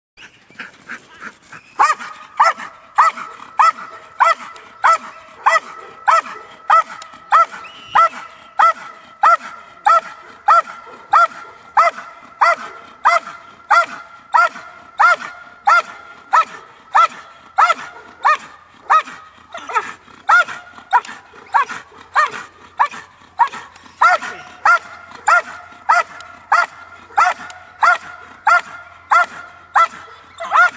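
A dog barking steadily and rhythmically at a helper hidden in a blind, about three barks every two seconds without a pause: the bark-and-hold (bark-out) of protection training. A few weaker barks open it, then the barks come at full strength.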